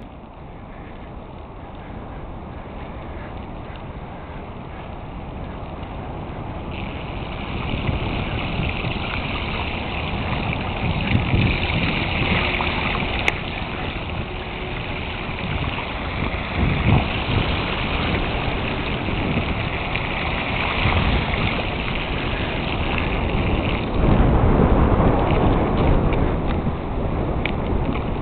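Wind buffeting the microphone during a mountain bike ride, with rushing floodwater. A steady hiss joins about seven seconds in and stops about twenty-four seconds in.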